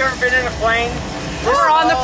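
A high-pitched voice in short phrases, its pitch sliding up and down, over a steady low rumble of the jump plane's engine heard inside the cabin.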